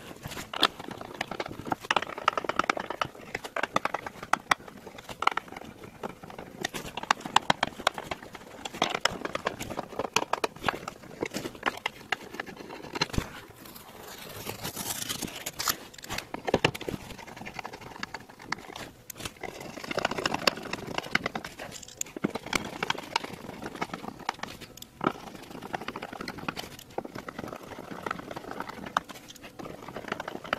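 Screws being backed out by hand from a carbon-fibre side skirt, heard close up: irregular small clicks and taps of the tool, screws and panel, with a brief scratchy rustle around halfway through.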